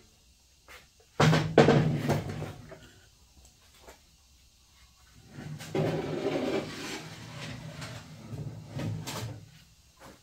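A Craftsman LT2000 lawn tractor's steel mower deck being handled, scraping and rattling as it is shifted off the workbench and slid under the tractor. There are two stretches of this: a short loud one about a second in, then a longer one from about halfway.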